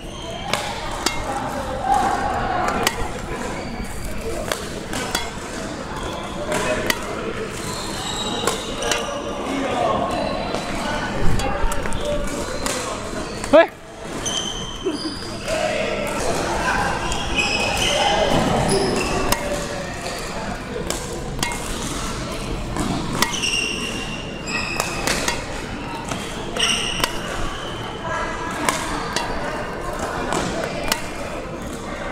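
Badminton rackets hitting shuttlecocks again and again in a multi-shuttle feeding drill, with quick footsteps on the court, and voices in the background. One especially sharp, loud hit comes about halfway through.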